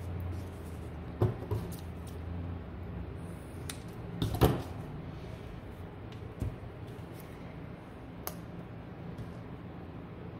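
Craft paint bottles and supplies handled on a tabletop: a few scattered light taps and knocks, the loudest about four and a half seconds in, over a low steady hum.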